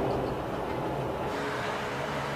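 Steady running noise of a moving passenger train heard from inside the carriage, a low rumble with a faint hum.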